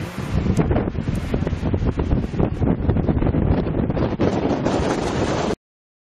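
Wind buffeting the camera microphone, a loud gusty noise that cuts off suddenly about five and a half seconds in.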